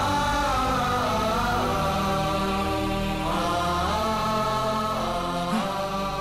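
Background film score of long held, chant-like tones, shifting to a new chord about three seconds in.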